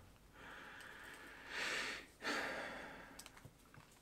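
A man's breathing close to the microphone: two soft breaths in quick succession about halfway through, with a few faint ticks of a microphone cable being handled near the end.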